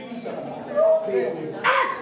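Short wordless vocal sounds from a person, with a brief held tone before the middle and a short, loud, sharp cry about three-quarters of the way through.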